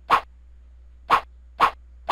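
Three short, sharp sound effects in a title animation, one as each letter drops into place: one at the start, then two more about a second in, half a second apart.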